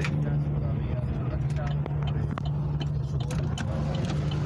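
Steady low engine drone and road noise heard from inside a moving car's cabin.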